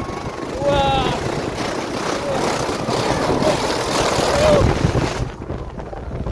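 Snow tube sliding fast down a plastic-mat tubing slope, a rushing noise of the slide and the wind that cuts off sharply about five seconds in as the tube runs out onto flat turf. A child's voice calls out briefly a few times over it.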